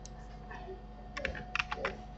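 Computer keyboard keys clicking: a quick run of about six keystrokes in the second half.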